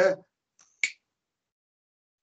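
A single short, sharp click just under a second in, between stretches of dead silence.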